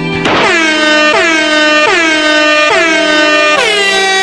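Loud comedic sound clip: a tune of long held, horn-like notes, each sliding down into pitch as it starts, with a new note about every 0.8 s.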